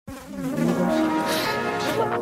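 A small flying insect buzzing, its pitch wavering up and down as it moves about.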